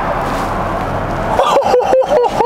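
Steady outdoor background noise, then a person's voice with short rising and falling calls coming in about one and a half seconds in.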